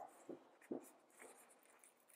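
Faint handling of a paper sticker sheet on a planner page: a light rustle and a couple of soft taps, about a third of a second and three-quarters of a second in, against near silence.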